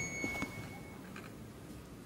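A faint, steady high-pitched tone that stops about a second in, followed by the low hush of a quiet hall.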